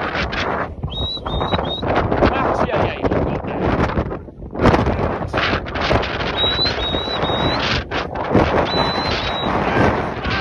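Strong wind buffeting a phone's microphone, surging and dropping unevenly. Short high whistled notes come through it in quick groups of two or three, three times: about a second in, around the middle, and near the end.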